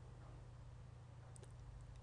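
Near silence: room tone with a steady low hum and a few faint ticks about a second and a half in.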